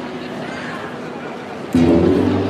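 Low background murmur, then about 1.7 seconds in an acoustic guitar strikes up loudly with strummed chords: the start of the accompaniment for a malambo solo.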